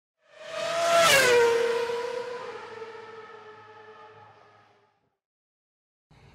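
A race car passing at speed: the engine note swells in, drops sharply in pitch as it goes by about a second in, then fades away over the next few seconds.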